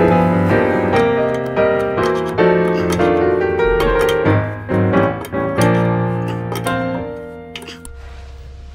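Background piano music, a run of struck notes and chords at an even pace, fading out near the end.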